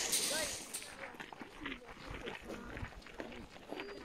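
Faint voices of people talking at a distance, too quiet to make out, with a few small clicks.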